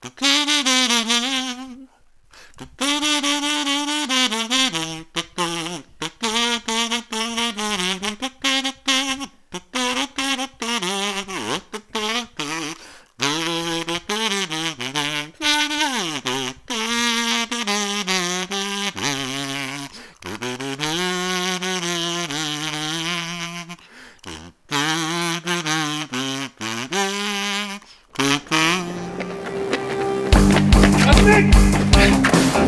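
Harmonica played solo: a melody of held, wavering and bending notes in short phrases separated by brief breaks.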